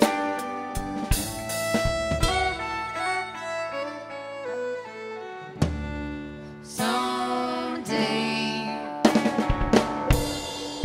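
Live band playing an instrumental passage: a bowed violin carrying sustained notes over electric guitar and drum kit. A quick run of drum hits comes in the last second.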